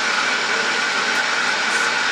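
Motorised reed-strip cutting machine running, its rollers drawing eeta (reed bamboo) strips through to be cut: a steady whirring noise with a constant high whine in it.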